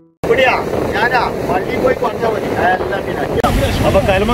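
Surf breaking over shoreline rocks and wind on the microphone, as a steady loud rush, under men talking. A piano tune fades out right at the start, followed by a brief gap before the live sound comes in.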